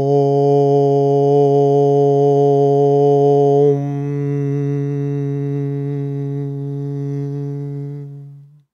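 A low male voice chanting one long, steady "Om", the open vowel closing toward a softer hum about four seconds in.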